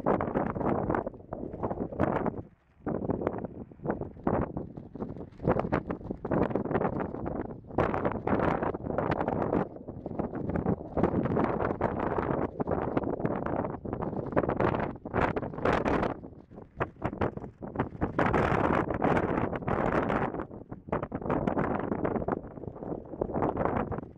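Wind buffeting the camera microphone in uneven gusts: a low rushing rumble that surges and falls, dropping away briefly about two and a half seconds in.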